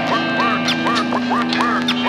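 Instrumental stretch of an underground hip-hop track with no drums: a held low tone under quick, repeated curving glides in pitch, several a second.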